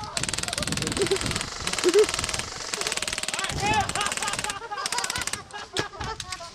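Airsoft rifles firing full-auto as covering fire, a fast even rattle of shots with shouting over it. The firing breaks off about four and a half seconds in, leaving a few single shots.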